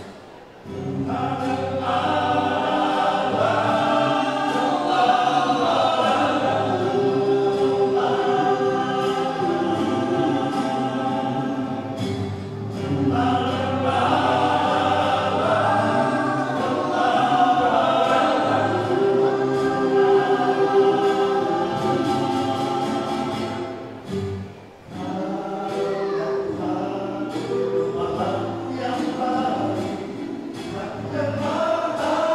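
Men's vocal group singing a church song in several-part harmony, with a brief break between phrases about 25 seconds in.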